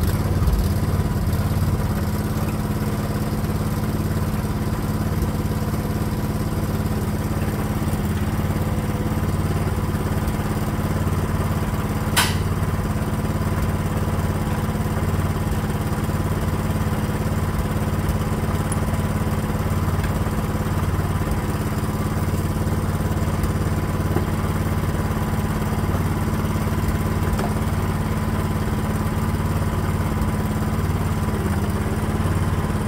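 Mini excavator engine idling steadily, with one sharp knock about twelve seconds in.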